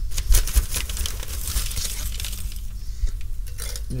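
Lumps of charcoal dropped by hand into a perforated stainless-steel charcoal basket, making a quick series of sharp clinks against the metal and against each other.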